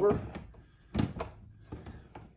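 Plastic rotary-tool holder knocked and clicked into place on a wall-mount panel: one sharp knock about a second in, then a few lighter clicks.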